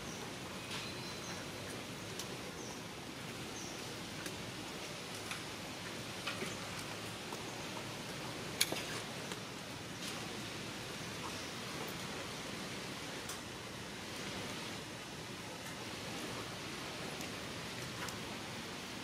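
Steady outdoor background hiss with a few faint ticks and short high chirps, and one sharper click about eight and a half seconds in.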